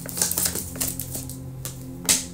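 A deck of tarot cards being shuffled and handled, giving a scatter of light, quick clicks of card on card, over soft background music with steady low held tones.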